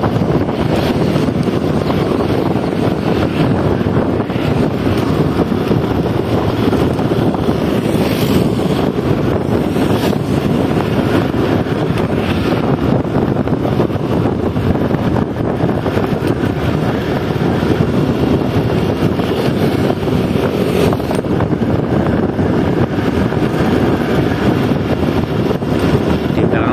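Steady wind rush on the microphone mixed with the road and engine noise of a moving vehicle, loud and unbroken throughout.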